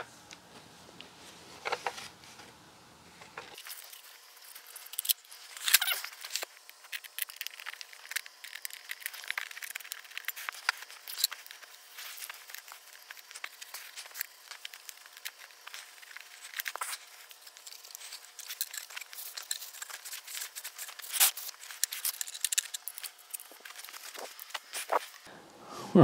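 Handling noise from wiping wet plastic in-wall speakers dry with a cloth: irregular rustling and rubbing with scattered small clicks and knocks as the speakers are turned over and set down.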